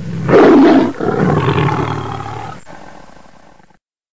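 A tiger's roar: a loud roar about a second long, then a second roar that trails off over the next three seconds.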